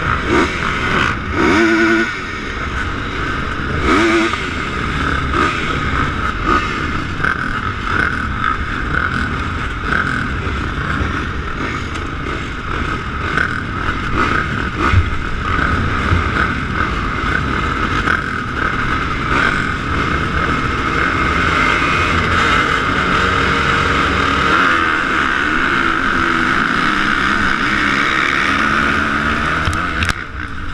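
A pack of motocross dirt bikes running and revving at the starting line, then accelerating away down the track, with the rider's own bike loudest. The sound grows louder and steadier toward the end.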